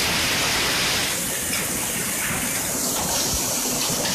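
Heavy rain pouring down, with muddy runoff water rushing along a flooded lane: a loud, dense, steady rush of water.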